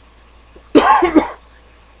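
A person coughing, a short loud double cough about three-quarters of a second in.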